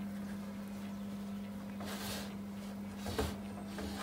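An oven runs with a steady low hum. A rustle comes about halfway through, and a metal clunk near the end as the baking tray is handled and pulled out of the oven.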